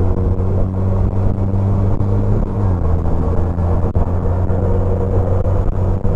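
Honda Rebel 250's parallel-twin engine running steadily at cruising speed under wind noise on a helmet-mounted microphone; its pitch drops slightly about two and a half seconds in.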